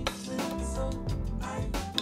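Instrumental background music with drums and bass, keeping a steady beat.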